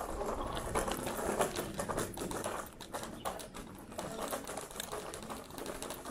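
Scooter's small hard wheels rattling over cobblestones: a fast, irregular clatter of clicks over a low rolling rumble.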